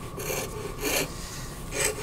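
Wood being worked by hand with a rasp: three scratchy strokes, a little under a second apart.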